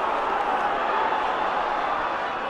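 Large football stadium crowd making a steady din of many voices during open play.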